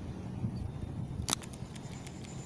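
A low rumble of wind and handling noise on the microphone. A single sharp click comes a little past halfway, followed by a few faint ticks, as a Daiwa Tatula SV TW baitcasting reel is handled.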